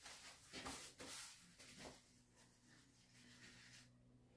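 Near silence, with a few faint, soft rustles in the first two seconds from hands being wiped with a wet wipe.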